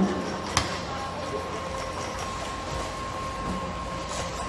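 Airport check-in baggage conveyor running with a steady rumble and a faint hum, and luggage on the metal rollers giving one sharp knock about half a second in.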